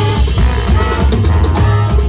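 Jazz big band playing live: saxophones, trumpets and trombones sounding held chords over a strong double bass line, drum kit and piano.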